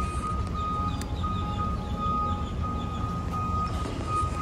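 An electronic beeper sounding a thin high tone in pulses about half a second long with short gaps, over a steady low vehicle rumble.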